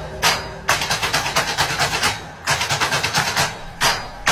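Background music: a dense, fast percussive beat broken by short pauses about every second and a half.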